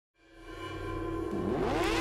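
Logo intro sound effect: a steady, sustained sound fades in and grows louder, with a rising sweep in pitch building over the last second.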